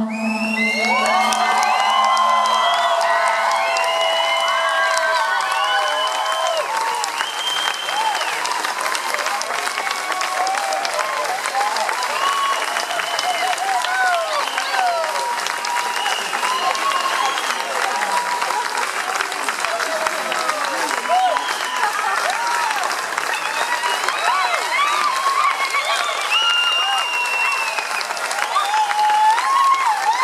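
Concert audience applauding and cheering with shouts and whoops, continuing steadily as the band takes its bow. The last held note of the song fades out in the first couple of seconds.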